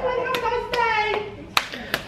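Hands slapping together in a group hand-stack: a few sharp slaps, the loudest near the end, over a voice held on a long, slowly falling note.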